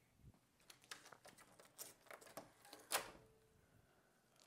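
Faint rustling and small clicks of a rubber resistance band being lifted off a door handle and handled, with footsteps on carpet. One sharper click comes about three seconds in.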